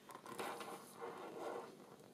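Faint rustling and scraping of cardstock being handled and slid on a tabletop, in a couple of soft stretches.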